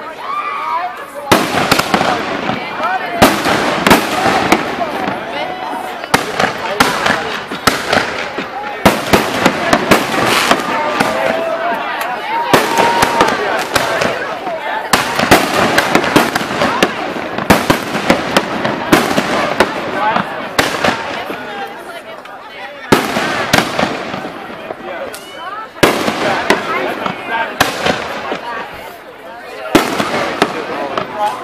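Aerial fireworks going off in a rapid, near-continuous string of sharp bangs and crackles, with a couple of brief lulls late on.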